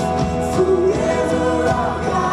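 Live church worship music: a group of singers sings held lines together over a band, loud and unbroken.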